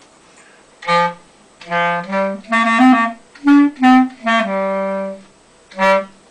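Solo clarinet playing a halting string of separate notes, ending on a note held for about a second and then one more short note. It is the player trying out notes to find the key for the tune.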